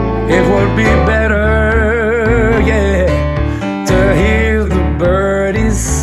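Blues song intro: bass, guitar and keyboard with a lead melody of long, wavering notes.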